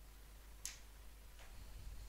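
Two faint, short clicks about three-quarters of a second apart, over a low steady hum.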